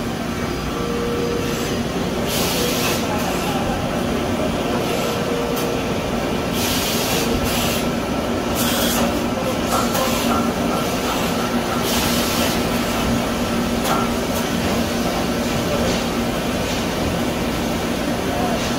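Brother TC-22B CNC drilling and tapping center running with a steady mechanical whir and hum, broken by four short hissing bursts.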